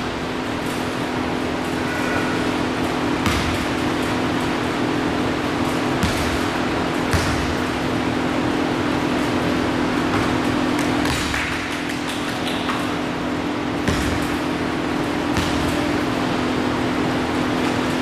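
A steady low hum throughout, with scattered single thuds of a basketball bouncing on a hardwood gym floor.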